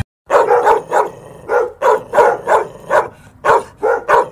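A dog barking over and over in quick, even barks, about three a second, starting a moment after a brief silence.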